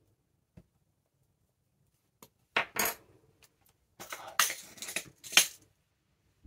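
Sharp clicks and clinks of small craft items handled on a desk. A few separate clicks come first, as the awl is set down. A quick rattling run of clicks follows near the end, as metal paper brads are picked out of a small plastic pot.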